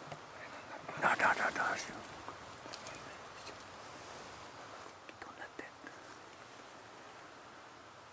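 A person whispering briefly about a second in, then quiet outdoor ambience with a few faint clicks.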